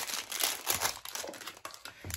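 Clear plastic packaging bag crinkling and rustling as a small USB charging cable is handled inside it and pulled out, with a sharp click right at the start.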